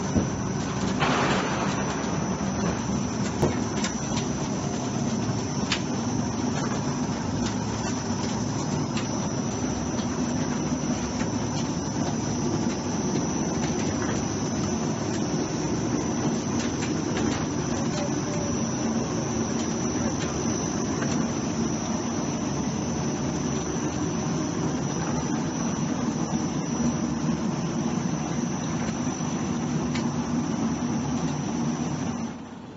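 Floor deck roll forming machine running: a steady mechanical drone with a faint high whine, and a few sharp clicks in the first several seconds.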